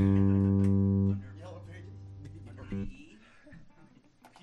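Electric guitar and bass holding one steady low note, cut off about a second in. A quieter note rings on until near the three-second mark, then only faint small sounds remain.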